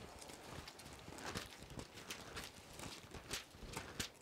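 Thin Bible pages being leafed through to find a passage: a run of faint, irregular paper rustles and flicks.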